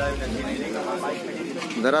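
Indistinct background voices of people talking, over a low rumble.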